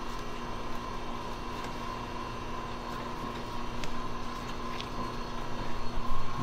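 Steady mechanical hum of heating and ventilation equipment in a boiler room, with a few faint ticks.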